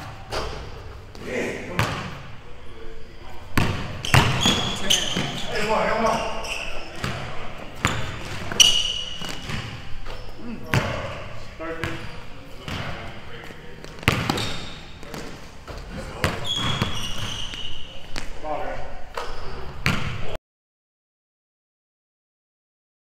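Basketball bouncing and thudding on a hardwood gym floor during play, with short sneaker squeaks and brief voices of the players; the sound cuts off suddenly near the end.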